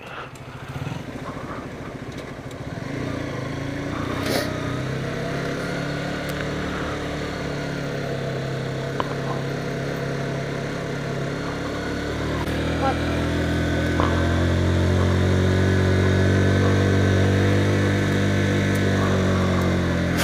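Motorcycle engine running while riding, its note steady at first, then louder and fuller from about twelve seconds in as the bike pulls harder.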